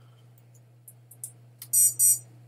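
A few faint keyboard clicks over a steady low hum, then near the end a loud, high-pitched electronic beep.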